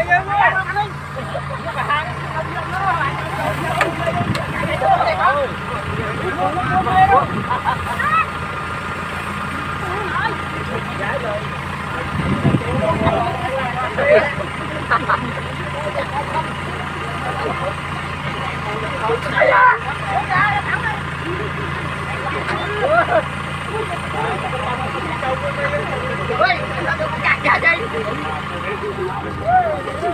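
Kubota combine harvester's engine running steadily, a constant hum, with several people's voices talking and calling out over it.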